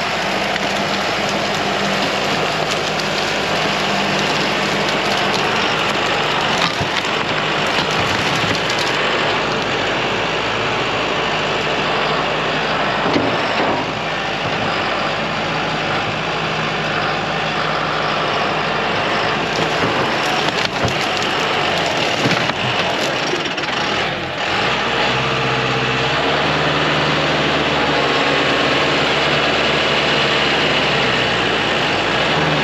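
John Deere 5090E tractor's four-cylinder diesel engine running under load as its front loader bucket pushes into a pile of dead tree wood, with scattered cracks and knocks from the wood. The engine note changes about 25 seconds in.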